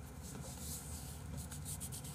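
A quiet pause with a steady low hum of room tone and faint scattered rustling.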